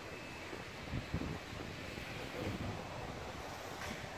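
Faint outdoor background noise with wind on the microphone, and a couple of soft low knocks about a second in.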